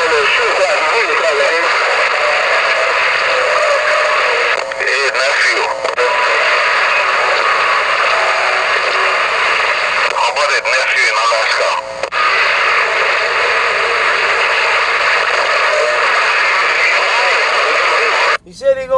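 CB radio receiver on sideband: a loud, steady rush of static with faint, garbled voices of distant stations coming through it, a short laugh about two seconds in, and a couple of brief dips in the noise.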